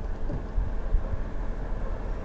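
A steady low background rumble with no distinct events, of the kind a running vehicle or nearby traffic makes.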